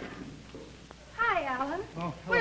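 A person's drawn-out, sing-song vocal call, starting a little over a second in, whose pitch dips and then rises again.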